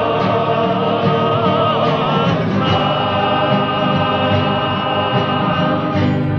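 Cape Malay male choir singing a Nederlandslied, a lead voice carried by the chorus, with guitar accompaniment; the lead holds one long note through the middle.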